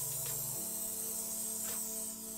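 Aerosol hairspray can spraying in one continuous hiss onto a leather surface, over soft background music.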